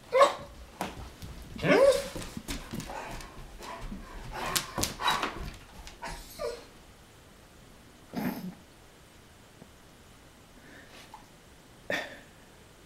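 German Shepherd barking in a run of loud, rapid barks over the first five seconds or so, then single barks about six, eight and twelve seconds in. It is alarm barking at a truck out on the street.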